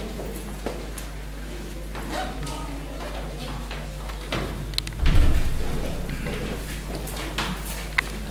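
Footsteps and rustling across a wooden floor in a hall, with a door thumping shut about five seconds in, the loudest sound, followed by a short low boom.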